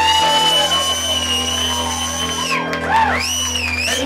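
Live rock band with electric guitars, saxophone and drums playing loudly. A high note is held for about two and a half seconds, then bends up and down near the end.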